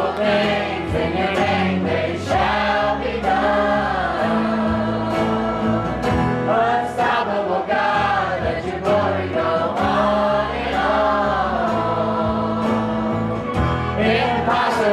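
Live contemporary worship band playing: a man singing lead while strumming an acoustic guitar, a woman singing along, with bass guitar underneath.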